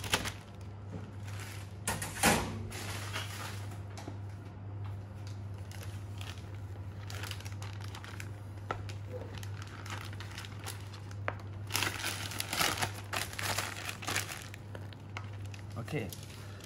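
Plastic piping bag crinkling as it is handled, filled with mousse and twisted closed, in crackly bursts near the start, about two seconds in, and again from about twelve seconds on, over a steady low hum.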